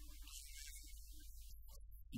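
Steady low electrical hum with hiss, at a low level, with a few faint scattered blips.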